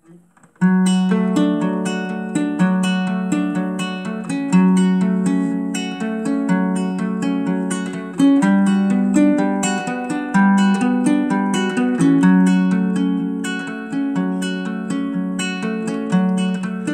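Ukulele strummed in a steady rhythm as an instrumental intro, starting about half a second in, the chords changing every few seconds.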